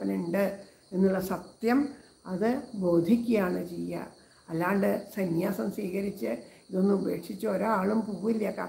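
A woman's voice speaking in Malayalam in phrases with short pauses, over a steady high-pitched background sound that runs on through the pauses.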